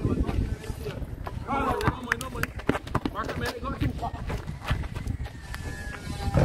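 Players' footsteps and a basketball bouncing on a concrete court, heard as scattered short knocks, with indistinct shouted voices from the players.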